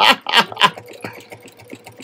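A short laugh at the start, then a computerized sewing machine stitching slowly through a quilt's layers with a walking foot: a fast, even run of needle-stroke ticks over a faint steady motor hum.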